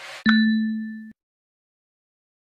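A short whoosh leading into a single bell-like ding about a quarter second in. The ding rings on one steady pitch and fades, then cuts off abruptly after about a second.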